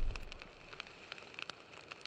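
Fire sound effect: the tail of a fiery whoosh dies away within the first half second, leaving faint, sparse crackling.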